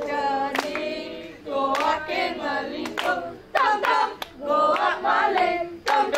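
A group of children singing a traditional Indonesian song in unison, with sharp hand claps cutting in between the sung phrases.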